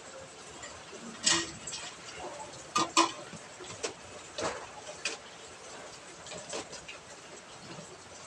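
Light, irregular clicks and rustles in a wire-mesh hamster cage with wood-shaving bedding, about ten scattered through the seconds, the loudest pair a little before the middle.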